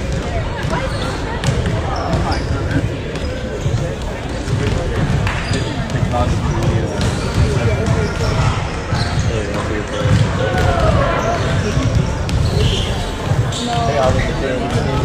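Several basketballs bouncing on a hardwood gym floor in a large gym, short sharp strikes over a steady rumble, with indistinct chatter from spectators.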